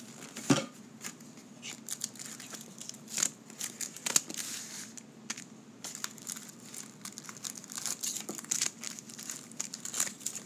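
Trading card pack wrappers from a box of 1990 Score football crinkling and tearing as the packs are handled and opened, in irregular crackles and rustles. A sharp knock comes about half a second in.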